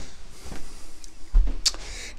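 Handling noise and footsteps of someone walking with a handheld camera. A low rumble runs throughout, with a heavy low thump just past halfway and a sharp click right after it.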